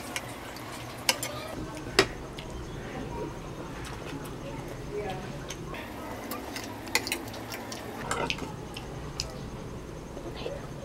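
Metal spoon clicking and scraping against a bowl as food is cut and scooped, with a handful of sharp, spread-out clicks, the loudest about two seconds in.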